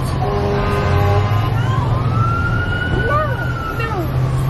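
A siren wailing, its pitch falling slowly and then rising again, over a steady low hum.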